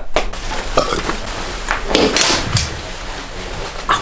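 Fabric rustling with scattered light clicks as a textile motorcycle garment is handled and pulled on.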